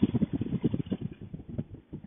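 Rapid, irregular low thudding, heard through a Bluetooth helmet microphone, that thins out and fades toward the end: a paramotor engine running down after being cut on landing.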